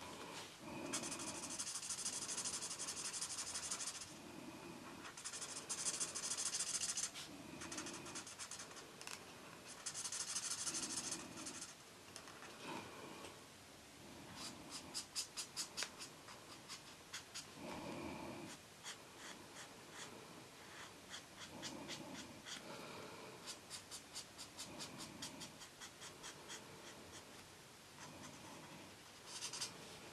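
Felt-tip marker nib scratching across colouring-book paper as hair is coloured in: a few longer strokes in the first dozen seconds, then runs of quick, short repeated strokes.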